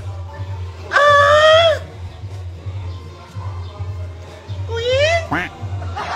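Squeezed squeaky rubber toy giving a long, loud, duck-like honk about a second in and a shorter rising one near the end, over background music with a steady beat.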